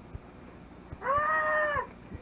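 A single meow-like call about halfway through, lasting under a second and rising, holding, then falling in pitch.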